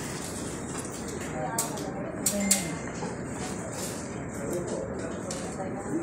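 Background chatter of people in a waiting hall, with three sharp clicks about one and a half to two and a half seconds in.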